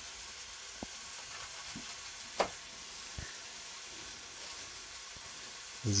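Chicken pieces frying in a pan, a steady sizzle, with a few light knocks, the sharpest about two and a half seconds in.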